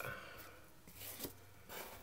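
Faint rustle and slide of cardboard trading cards as the top card of a small hand-held stack is slipped to the back, with a few soft scrapes.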